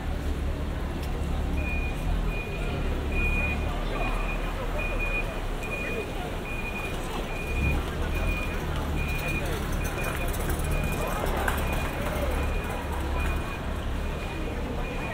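Busy pedestrian street ambience: passers-by talking, with a vehicle engine running low underneath. From about a second and a half in, a high-pitched electronic beep repeats steadily about twice a second.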